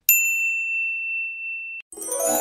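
A single bright electronic 'ding' sound effect: the notification-bell chime of a subscribe-button animation. One high pure tone holds steady for nearly two seconds and then cuts off suddenly.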